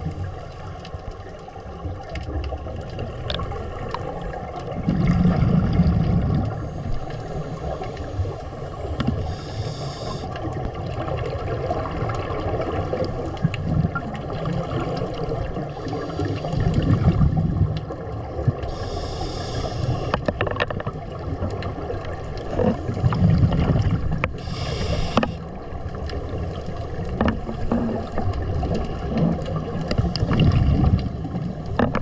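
A scuba diver breathing through a regulator underwater. Exhaled bubbles rumble in swells about every five or six seconds, with a few short hissing inhalations in between.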